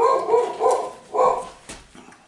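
A dog barking about four times in quick succession, then stopping.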